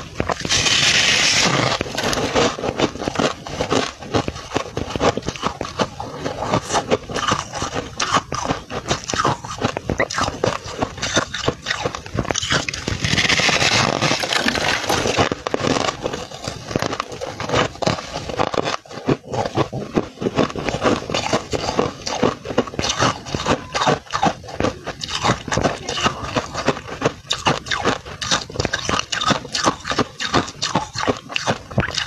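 Close-miked crunching and chewing of freezer frost, a dense run of rapid crackles, with two louder stretches of noise, one at the start and one about 13 seconds in.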